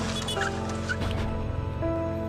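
Background music of sustained chords, over which a small car passes with a whoosh of tyre and engine noise that fades after about a second. Two brief high chirps come early in the whoosh.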